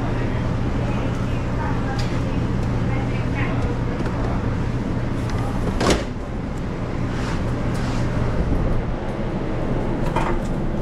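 Steady low hum of restaurant kitchen equipment, with faint voices in the first few seconds and one sharp clack about six seconds in.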